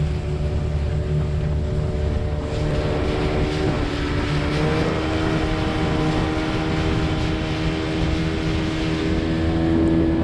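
A 15 hp Yamaha Enduro two-stroke outboard pushes a rigid-inflatable dinghy along at speed. The engine runs at a steady pitch that steps up a little about four seconds in, over the rush and splash of spray off the hull.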